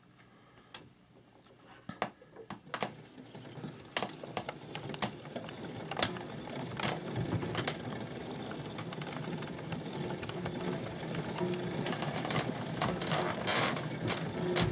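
Player piano's pneumatic roll mechanism running as the blank leader of the paper roll winds across the tracker bar, before any notes play. A steady mechanical whir grows gradually louder, with scattered knocks and clicks.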